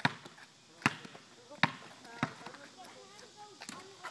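Basketball bouncing on asphalt four times, about a second apart at first and then a little quicker, the last bounce softer.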